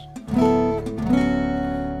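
Steel-string acoustic guitar in drop D tuning, fingerpicked: two chords, the first about a third of a second in and the second about a second in, each left to ring.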